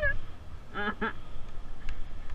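A person's laughter in short, honking, duck-like bursts: a brief one at the start and two close together about a second in, over the low rumble of the moving electric go-kart.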